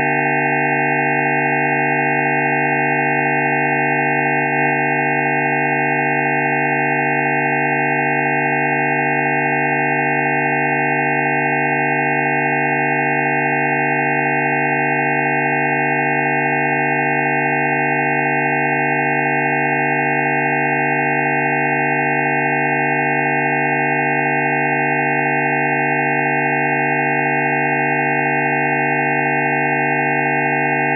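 Electronically generated frequency-therapy tones: a dense chord of many pure sine tones at fixed pitches, from low to fairly high, held perfectly steady without any change in pitch or loudness. A faint click sounds about four and a half seconds in.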